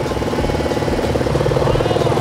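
ATV (four-wheeler) engine running at low speed with a steady, even pulsing.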